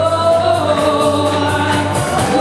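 Gospel song: a woman's lead voice amplified through a handheld microphone, holding long notes over instrumental accompaniment with a steady low bass note.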